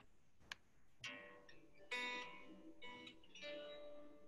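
A single click about half a second in, then acoustic guitar duo music starts about a second in, played from a computer over a video call.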